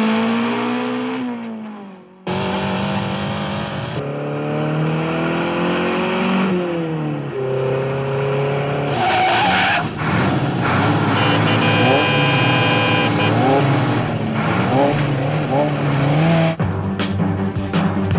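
Sports car and motorcycle engines revving hard in a film car chase, their pitch climbing and dropping again and again with each gear change. The sound cuts abruptly between shots, and quick rising engine sweeps repeat through the later part.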